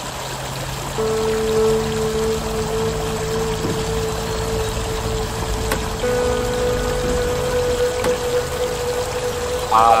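Stream water running over rocks, joined about a second in by sustained instrumental chords that change about six seconds in. A voice starts singing at the very end.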